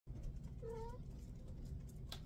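A single short cat meow, faint and slightly rising, a little over half a second in, over a steady low room hum.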